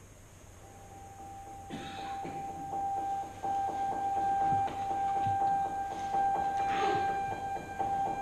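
Saxophone and piano chamber music: a single high note held and swelling from very quiet to loud, with many short clicks over it from about two seconds in.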